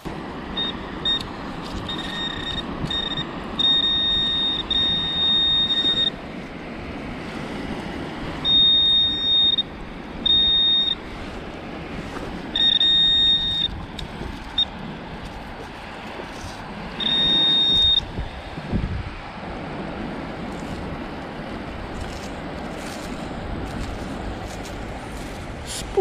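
Handheld metal-detecting pinpointer sounding a high, steady buzzing tone, in short beeps and longer runs of up to about two seconds, as it is probed over the dug wet sand: the signal of a metal target close by. Steady wind noise underneath.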